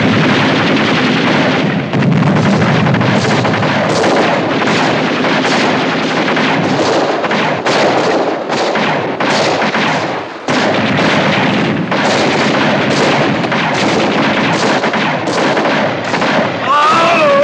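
A battle of machine guns and rifles firing almost without pause, the shots running together into a dense, loud din. The din dips briefly about ten seconds in.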